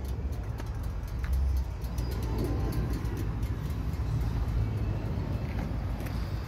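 Outdoor ambience: a steady low rumble of distant road traffic, with a few faint clicks.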